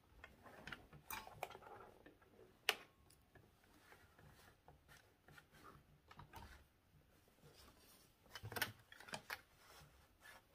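Faint handling sounds of fabric being positioned under a sewing machine's presser foot: soft rustling with scattered light clicks, one sharp click about three seconds in and a short flurry of clicks and rustling near the end.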